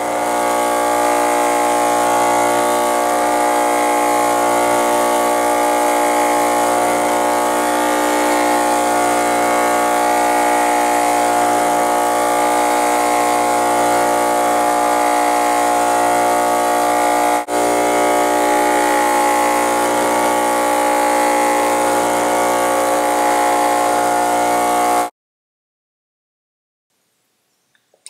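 Homemade shaker table running, vibrating a wooden mold filled with a thick cement and grog mixture so that it flows and levels. It makes a steady mechanical hum with a brief break about seventeen seconds in, and stops suddenly about a second before the end.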